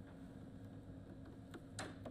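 Very quiet background: faint hiss with a steady low hum, and a brief faint sound near the end.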